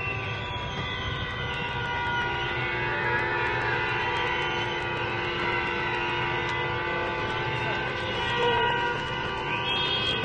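Many vehicle horns sounding together in long held blasts, forming a dense chord of overlapping steady tones over a low street rumble.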